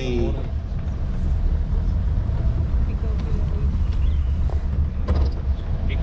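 Open-top safari jeep driving along a forest track: a steady low engine and road rumble.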